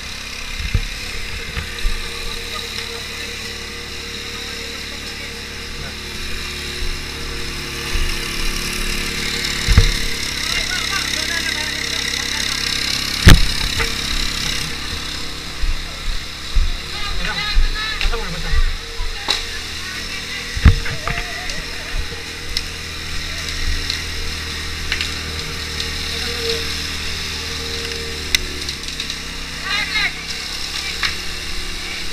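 A fire engine's motor running steadily beneath the shouts of people, with scattered knocks and thumps as a fire hose is laid out and handled; the sharpest knocks come about halfway through and again about two-thirds through.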